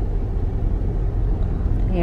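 Steady low rumble of a car's engine and tyres, heard from inside the cabin while the car drives slowly.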